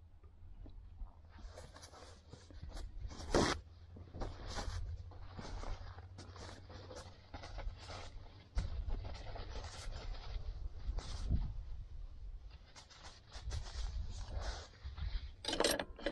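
Palette knife scraping wet oil paint off a stretched canvas: a run of short, irregular scrapes, the sharpest about three seconds in, over a steady low rumble.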